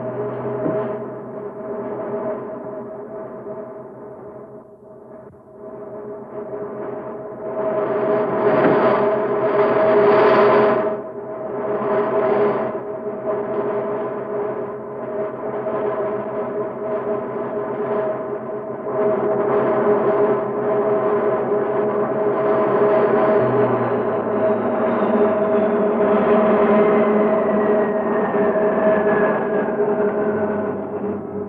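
Sustained, gong-like drone from the film soundtrack: two steady ringing tones over a low hum, with swells of noise that rise and fall. The drone dips about four seconds in, is loudest around eight to eleven seconds in, and a faint falling tone slides down near the end.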